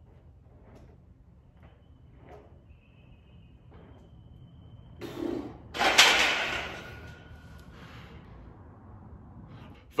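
Incline barbell bench press set: faint breathing and small knocks at first, then a loud hissing burst about six seconds in that fades over a second or so, as the set ends.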